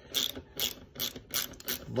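Hand ratchet clicking through a series of short back strokes, about two to three a second, as the lag bolts holding a bench vise to the workbench are worked loose.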